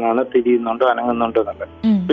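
Speech: a voice talking in Malayalam, with the narrow, muffled sound of a radio broadcast.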